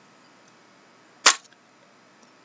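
A single sharp click a little past the middle, brief and sudden, as stiff trading cards are handled and pulled apart.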